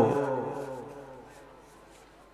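The end of a man's chanted sermon phrase through a microphone and public-address system, the voice and its echo dying away over about a second and a half into near silence.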